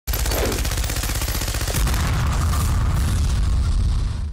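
Machine gun firing one long, continuous automatic burst of rapid, evenly spaced shots.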